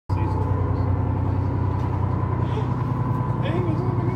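A tour boat's engine running with a steady low drone and a thin, steady whine above it, heard on deck.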